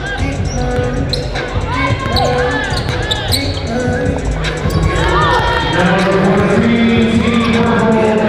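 A basketball bouncing on a hardwood gym floor with short sneaker squeaks, over a music track with a steady bass line.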